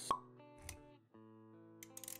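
Intro-animation music with sound effects: a sharp pop just after the start, the loudest sound, then a soft low thump, and the music cuts out for a moment about a second in before resuming with a few quick clicks near the end.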